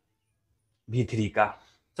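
Speech only: after a short silence, a man says one short word.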